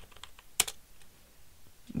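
A few keystrokes on a computer keyboard, the loudest about half a second in.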